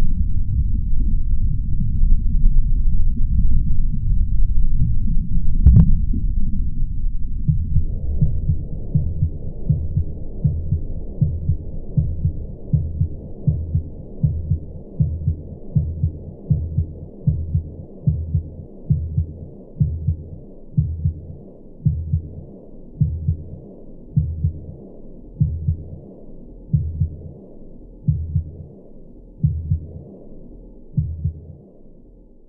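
Soundtrack heartbeat. A dense low rumble, with a single sharp knock near six seconds, cuts off about seven seconds in. It gives way to steady low heartbeat thuds at about one beat a second, slowing slightly toward the end.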